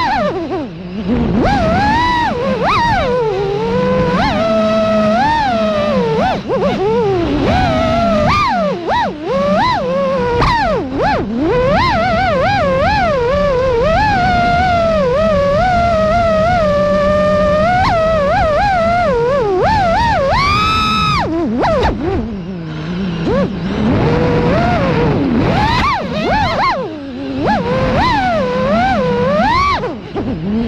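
FPV quadcopter's brushless motors whining, the pitch sliding up and down constantly with the throttle, and a sharp high surge of throttle about two-thirds of the way through.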